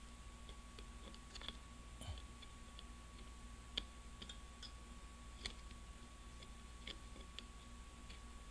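Faint, irregular small metal clicks of a flathead screwdriver working a retaining plate into the slot of an aluminium automatic-transmission valve body, heard over a steady faint hum.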